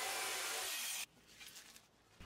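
Jigsaw cutting a Lexan polycarbonate sheet, a steady noise that cuts off abruptly about a second in.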